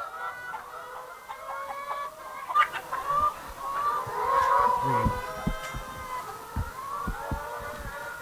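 A flock of brown laying hens clucking together, many calls overlapping. Soft low thumps join in during the second half.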